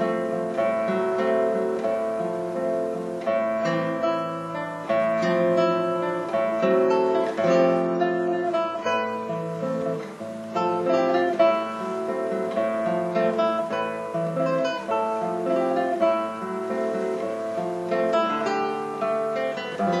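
Solo classical guitar played live: a plucked melody over a moving bass line, broken at intervals by clusters of sharply struck chords.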